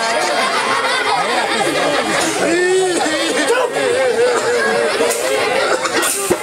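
Jatra stage actor's voice delivering dialogue, with one drawn-out wavering vocal note held about halfway through.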